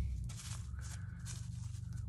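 A low steady rumble with a few faint rustles from hands handling a small potted cactus in gritty compost.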